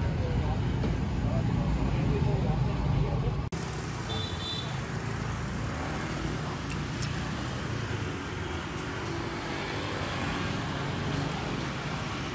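Street traffic noise: a low engine rumble for the first few seconds, then after an abrupt cut a little over three seconds in, a steady background of road traffic.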